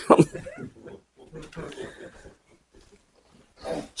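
A small audience laughing and chuckling at a joke, loudest at first and dying away after a couple of seconds.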